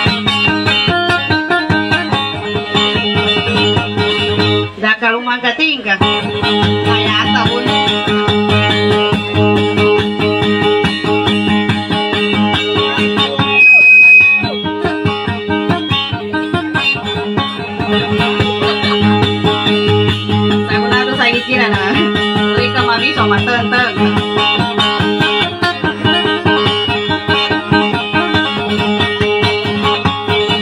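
Guitar plucked in quick, steady repeated notes over a sustained low drone, playing dayunday accompaniment. It breaks off briefly about five seconds in. About halfway through, a short high-pitched tone is the loudest moment.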